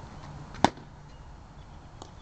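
A single sharp crack of a toy bat striking a ball off a batting tee, about two-thirds of a second in.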